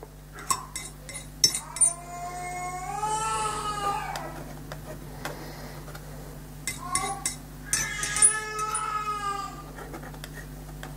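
A cat meowing twice in long, drawn-out calls that bend in pitch, about three seconds in and again about eight seconds in. A few sharp clicks and taps fall around the calls.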